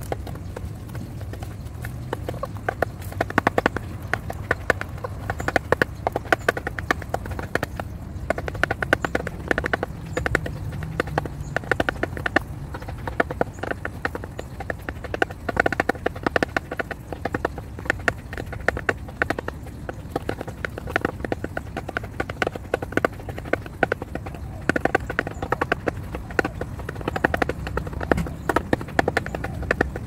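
Two chickens pecking seed from a clear plastic bowl: a fast, irregular patter of sharp clicks as their beaks strike the plastic, several per second.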